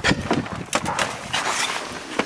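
Wind buffeting the microphone and rustling handling noise, with a few sharp clicks and knocks as a snowy car's rear door is opened.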